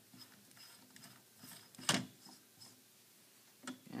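Faint scraping and ticking as a microscope camera head is turned onto the threads of its reduction-lens adapter, with one sharp click about two seconds in.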